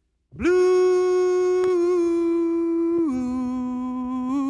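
A single voice singing a long held note that starts a moment in with a slight scoop up, then steps down to a lower held note about three seconds in.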